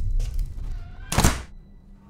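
A heavy low thud dying away, then a short harsh burst of noise about a second in that stops abruptly, leaving a quiet low hum.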